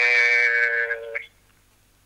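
A man's voice holding a long, level-pitched 'eeh' of hesitation that trails off about a second in, followed by near silence.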